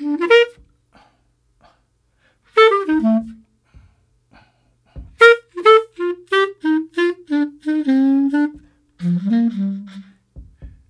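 Solo jazz clarinet playing short swing phrases with rests between them: a brief phrase at the start, a falling phrase about two and a half seconds in, then a longer run of notes stepping downward from about five seconds in, and low notes near the end.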